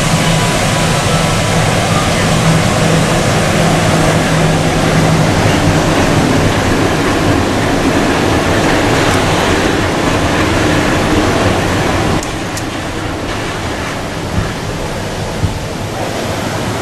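Walt Disney World Mark VI monorail train passing along its elevated concrete beam: a steady electric hum within a loud, continuous rush, with fountain water adding to the noise. The sound drops and thins about twelve seconds in.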